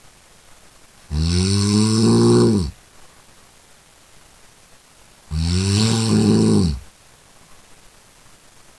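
A person snoring: two long snores about four seconds apart, each lasting about a second and a half and dropping in pitch as it ends.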